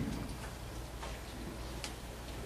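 Quiet room tone with a faint steady low hum and a few soft clicks, the sharpest one near the end.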